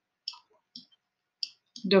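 Computer mouse button clicking a few times, short sharp clicks spaced irregularly, as handwritten digits are drawn on screen with the mouse.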